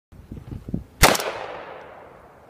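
A single shot from an LWRC M6A2 5.56 mm piston carbine about a second in, followed by a long echo that dies away.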